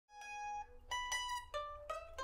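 Two bowl-back mandolins playing a slow, soft melody: about five plucked single notes, each ringing on briefly before the next.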